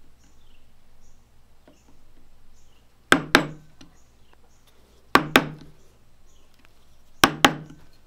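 A wooden mallet striking a steel chisel in quick pairs of blows, three pairs about two seconds apart, driving the chisel into a wooden gunstock to score a line for the flintlock's mainspring inlet.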